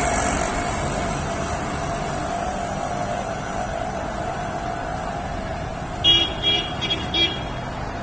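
Steady city street traffic noise from passing motorbikes and rickshaws, then a few short vehicle horn toots about six seconds in.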